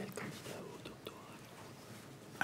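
Faint murmur of low voices from a seated audience, with a few soft clicks.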